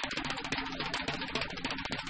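Small-group acoustic jazz with a drum kit playing busy, rapid strokes on cymbals and snare, and bass and other pitched instruments underneath.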